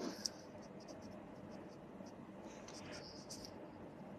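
Faint scratchy rubbing close to a microphone, with a few sharp clicks near the start and again a little after the middle.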